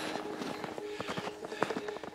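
Irregular footsteps on snow as hikers start up a slope, with soft background music underneath.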